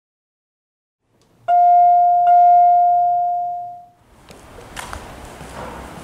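A bell-like chime struck twice at the same pitch, less than a second apart, the second ringing out and fading over about two seconds. After it comes faint background noise with a few light clicks.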